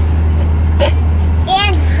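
Steady low rumble inside a car cabin, with a brief break about one and a half seconds in. A short voice is heard near the end.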